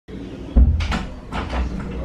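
A wooden room door being unlatched and pushed open: a low thump about half a second in, then several clicks and knocks from the knob and latch.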